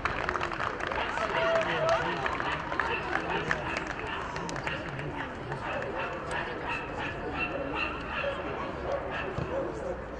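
Many voices shouting and calling over one another, with scattered short sharp knocks.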